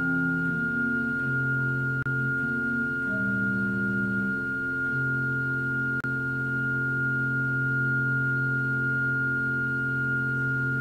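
Church organ playing slow sustained chords. A single high note is held steadily above them, while the lower notes shift a few times in the first half and then settle into a long held chord.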